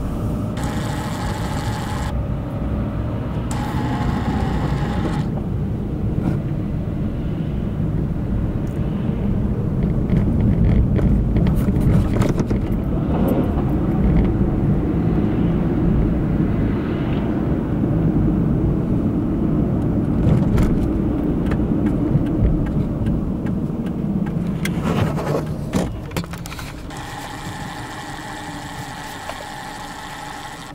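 Road and engine noise inside a moving car's cabin: a steady low rumble that grows louder through the middle and falls away about 26 seconds in. A short pitched sound with many overtones comes twice near the start and again near the end.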